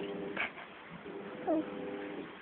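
A five-month-old baby cooing and squealing: two short vocal sounds about a second apart, the second a brief coo that slides down in pitch.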